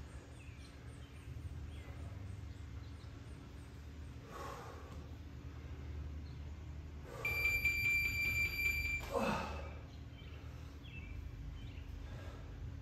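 A man exhaling hard at intervals while doing kettlebell goblet squats, over a steady low hum. A little past halfway, a steady high electronic beep sounds for about two seconds and cuts off sharply.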